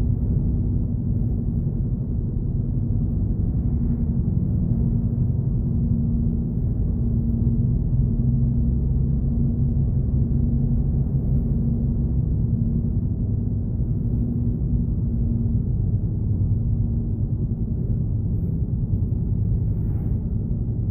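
Steady low rumble of road and engine noise inside a moving car, with a faint steady hum.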